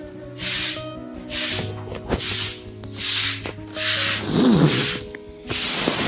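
Broom sweeping a floor: repeated swishing strokes, about one a second.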